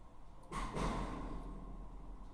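A woman's short breath out close to the microphone, starting suddenly about half a second in and fading within a second.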